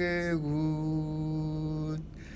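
A man singing a slow prayer song unaccompanied, holding one long note that steps down slightly in pitch about half a second in.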